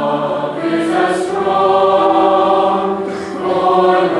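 Large mixed choir singing sustained chords, with a sibilant 's' consonant from the voices about a second in and again a little after three seconds.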